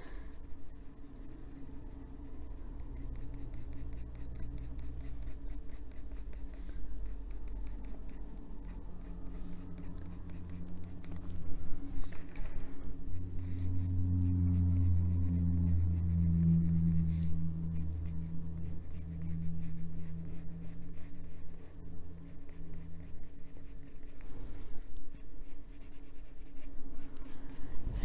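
Coloured pencil scratching across paper in quick repeated strokes, shading colour in. A low hum comes in about halfway through and fades a few seconds before the end.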